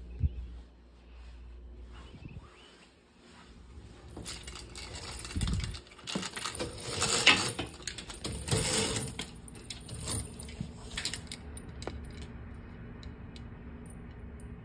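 A window roller shade being pushed up by hand: a dull thump, then several seconds of rattling clicks and scrapes from the shade and its bottom bar.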